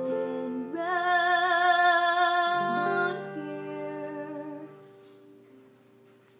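A woman singing to her acoustic guitar at the close of a song: strummed chords ring under a long wordless held note with vibrato about a second in. The voice stops about three seconds in, and the last guitar chord rings out and fades almost to silence.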